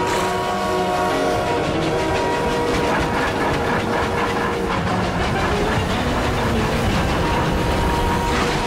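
Steam locomotive chugging, a fast, even beat that takes over about three seconds in, under held notes of background music.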